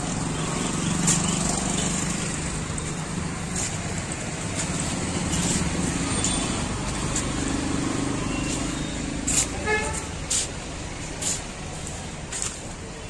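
Steady background rumble of road traffic, with indistinct voices. Several sharp clicks come in the last few seconds.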